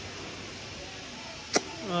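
Faint, steady outdoor background noise with no clear source, broken by one short sharp click about one and a half seconds in, then a voice beginning to say 'bye bye' at the very end.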